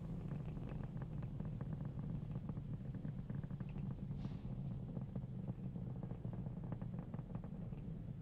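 Rocket roar of the Falcon 9 first stage's nine Merlin engines in ascent, as the rocket nears maximum dynamic pressure: a steady low rumble with continuous crackling.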